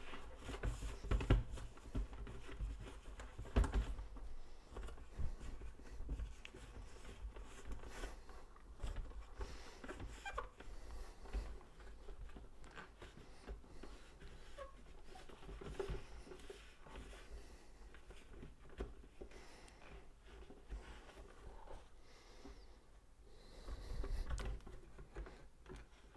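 Faint scattered rubbing and small knocks of a paper towel being worked around the inside of an unplugged hot-air popcorn popper, with one sharper knock about four seconds in.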